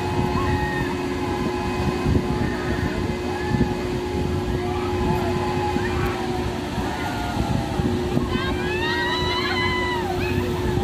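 Dream Twister spinning thrill ride running, with a steady machine hum under dense low rumbling. Near the end, several riders' voices shout high over it.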